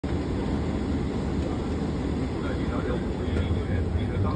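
Steady low drone of an airliner cabin: engine and air-system noise. Faint voices come in over it from about halfway through.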